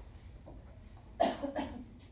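A person coughing: a short double cough a little past the middle, the first one the louder.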